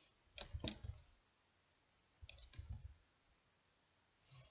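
Two short clusters of soft clicks and knocks, about half a second in and again past two seconds: handling noise from hands working a crochet hook and yarn close to the microphone.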